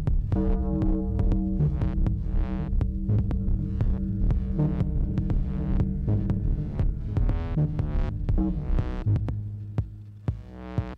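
Improvised electronic music from analog synthesizers: a pulsing, repeating bass line under rhythmic clicky percussion hits, with brighter swelling tones every few seconds. The music thins out near the end.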